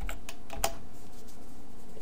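Computer keyboard keys typed in a short run: a handful of clicks in the first second, the last one the loudest, over a steady low hum.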